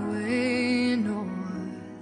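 Music from a pop ballad: a long held note with a slight waver, then lower sustained notes, growing quieter toward the end.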